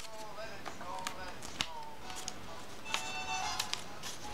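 Light clicks and rustles of paper strips being bent and taped together by hand, over faint background music.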